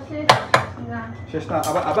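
Kitchenware clinking: two sharp clinks in quick succession, then more clattering near the end.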